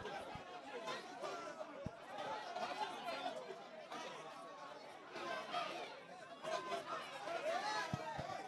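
Crowd chatter: several voices talking over one another, none of them clear enough to make out.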